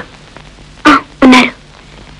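A person's voice saying a brief two-part utterance about a second in, over a faint steady hum of the film soundtrack.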